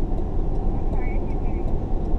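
Car engine idling, a steady low rumble heard from inside the cabin.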